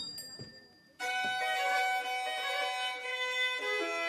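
Violin music begins about a second in, a slow melody of held notes, after a brief fading sound.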